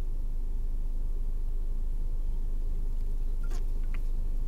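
Steady low background hum, with a couple of faint small clicks near the end; no guitar notes are sounded.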